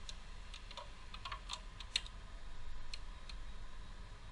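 Socket ratchet wrench clicking in short, irregular runs as it turns the valve cover bolts, with one louder click about halfway through.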